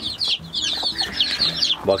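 A brood of young chicks peeping continuously, many shrill chirps overlapping, with a mother hen clucking softly underneath.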